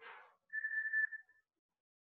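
A single steady high whistled note lasting about a second, after a brief soft noise at the start.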